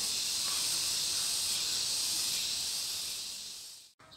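Insects shrilling steadily at a high pitch, one unbroken hiss-like chorus that fades out just before the end.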